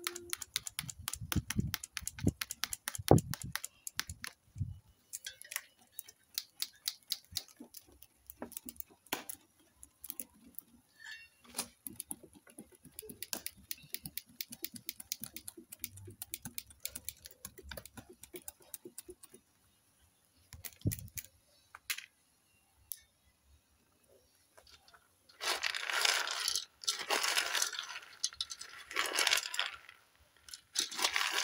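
Palm kernels crackling and popping as they fry in a metal pot: many sharp clicks, dense at first and sparser after about ten seconds, while their oil is starting to come out. Near the end there are a few seconds of loud rattling and scraping as the kernels are stirred with a wooden stick against the pot.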